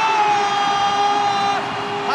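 A football commentator's long, drawn-out shout of "goal" as a header goes in: one high held note that ends about a second and a half in.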